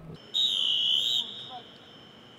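A sports whistle blown once: a single high, slightly wavering blast of just under a second, followed by a faint steady high tone.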